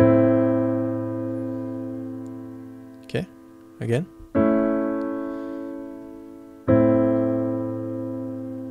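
Piano playing an A minor chord over a low A in the bass, struck three times: at the start, about four and a half seconds in, and near seven seconds. Each chord is held with the sustain pedal and rings out, fading slowly.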